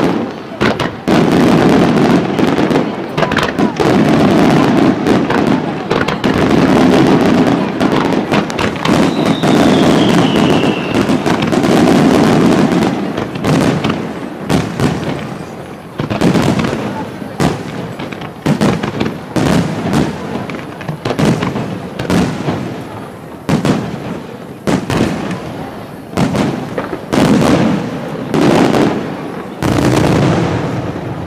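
Aerial firework shells bursting in rapid, dense succession for about the first twelve seconds, with a falling whistle about nine seconds in. After that come separate sharp bangs, several a second at times.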